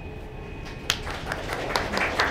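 Audience applause starting: one sharp click about a second in, then scattered hand claps growing denser.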